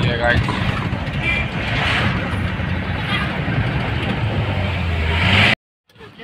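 Vehicle engine running with a steady low hum and road noise, heard from inside the cabin. It cuts off abruptly about five and a half seconds in.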